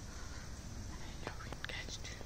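A person whispering briefly in the second half, over steady low background noise.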